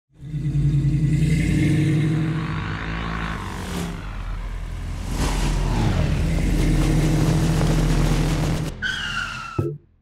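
Sound-designed logo sting for an animated festival ident: a loud, steady low drone with whooshing sweeps about four and five seconds in, a falling tone near the end, then a sudden cut-off.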